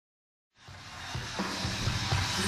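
Live rock concert recording fading in from silence about half a second in: crowd and stage noise, rising in level, with a few low thuds from the stage.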